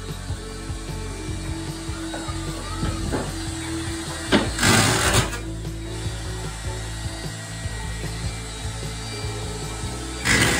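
Cordless drill running in one short burst about halfway through, driving a screw into drywall, over background music.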